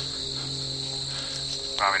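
Steady high-pitched chorus of field insects, with a low steady hum beneath it.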